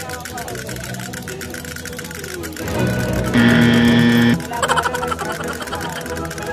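Several battery-operated toy drummer figures beat their small drums together in a rapid, even clatter, with the toys' electronic tunes playing over it. About three seconds in, a louder steady electronic tone sounds for over a second.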